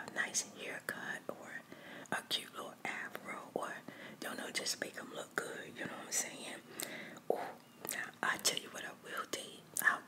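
A woman whispering close to the microphone, with small clicks between the words.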